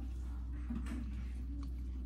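Quiet kitchen with a steady low hum, and two faint, short murmurs from a person tasting jam from a spoon.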